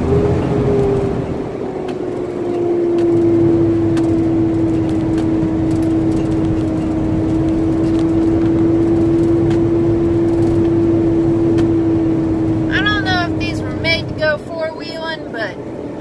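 Semi-truck diesel engine pulling under load on a dirt road, heard from inside the cab: its pitch climbs near the start, then holds steady until it eases off near the end. A voice sounds briefly near the end.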